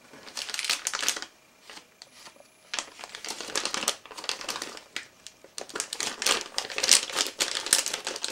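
Crinkling of a clear plastic soft-bait package being handled, a burst in the first second, a short lull, then steady crinkling through the rest.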